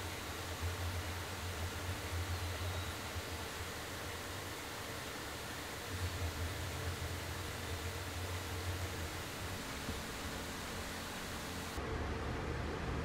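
Steady background hiss with a low hum, and faint rustling as gloved hands handle a small film camera. The hiss drops away suddenly near the end.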